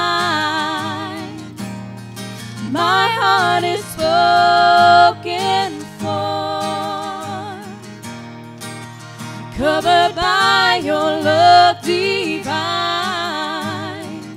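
Live Christian worship song: women singing long phrases with vibrato over a strummed acoustic guitar.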